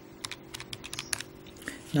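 Buttons of a Casio scientific calculator being pressed in quick succession, a run of light clicks as a multiplication is keyed in.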